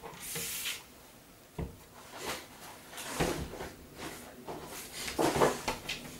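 Rummaging for small cable ties: a sliding rustle at the start, a sharp knock between one and two seconds in, then scattered small clicks and rattles.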